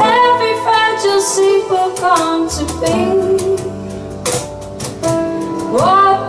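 A woman singing a song live at a microphone, backed by instrumental accompaniment, her voice gliding between held notes and swooping up near the end.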